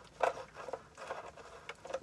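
Light, irregular clicks and scrapes of a hand tool working on the screws of an automatic gearbox's oil filter as they are turned and snugged up.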